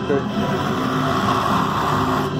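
Industrial overlock sewing machines running, a steady mechanical whir with voices in the background.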